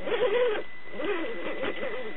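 Electric drive motor and gears of an Axial AX10 Scorpion 1:10 RC rock crawler whining as it crawls over rocks, the pitch wavering up and down with the throttle, with a few clicks of tyres and chassis on rock.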